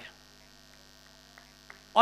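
Steady low electrical mains hum in a pause between spoken phrases, with two faint clicks near the end.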